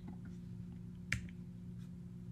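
A single sharp click about a second in, over a faint steady low hum.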